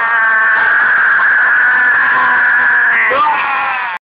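A man's long drawn-out yelled "whassup" in a high strained voice, held steady for about three seconds, then breaking with a slide in pitch near the end before cutting off.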